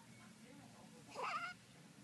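A baby cooing once: a short, soft, wavering vocal sound about a second in.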